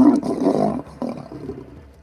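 Male lion roaring: a few deep, loud grunts, the first the strongest, fading away over about a second and a half.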